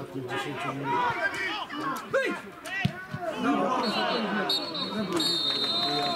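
Several men's voices shouting over one another on a football pitch. Near the end comes a referee's whistle, one short blast and then a longer one: the final whistle ending the match.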